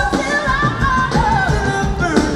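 Live band music: a lead vocal sings long held, wavering notes over electric guitar, bass and drums.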